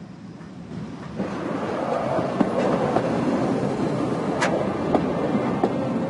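Rail vehicle running along the track, heard from inside: a steady running noise that grows louder about a second in, with a few sharp clicks.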